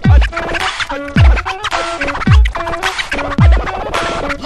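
Electronic hip-hop music with DJ turntable scratching, over a deep bass drum that drops in pitch, four hits about a second apart. A chopped vocal 'Att—' is cut off at the start.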